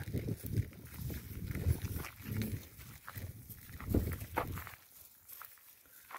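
Nguni cattle close by making soft, low-pitched lowing sounds a few times.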